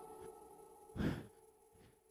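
A man breathes out once, hard and short, into a headset microphone about a second in. He is out of breath from jump squats.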